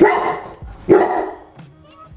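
Cane Corso barking twice, about a second apart, in a deep loud bark.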